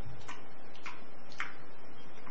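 Three short mouth clicks about half a second apart: lips and tongue smacking while chewing and tasting something.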